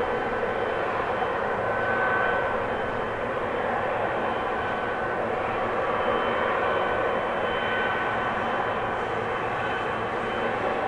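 Boeing 777F's GE90 turbofan engines running steadily as it taxis onto the runway, a constant high whine over a broad jet rumble.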